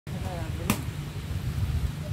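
Choppy low rumble of wind buffeting the microphone, with faint voices and one sharp click just under a second in.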